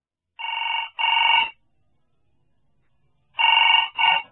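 Telephone ringing with a double ring: a pair of rings about half a second in, then after a pause another pair starting near the end, an incoming call waiting to be answered.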